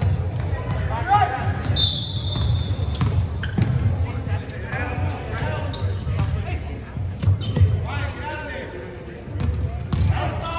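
Basketball bouncing on a hardwood-style sports hall floor during play, with players' calls and shouts echoing in the large hall. About two seconds in, a steady high tone sounds for about a second.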